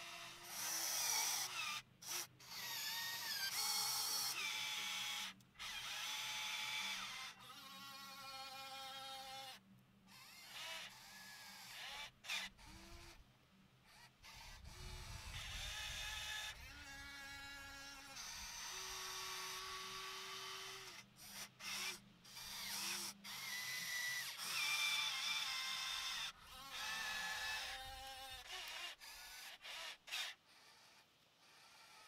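Electric motors of a 1/14-scale RC CAT 336D excavator whining in short bursts as the boom, arm and bucket move. The pitch steps up and down, and the whine starts and stops abruptly many times.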